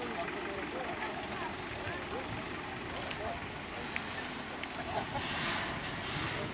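Indistinct chatter of a crowd of spectators, several voices talking at once. A thin, high-pitched steady whine sounds for about two seconds near the middle.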